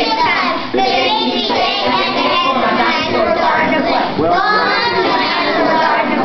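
A group of young children singing a song together in chorus.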